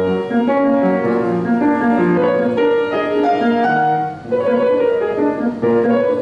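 Kawai grand piano played in classical style, one note or chord after another at a moderate pace. The playing breaks off briefly about four seconds in, then resumes.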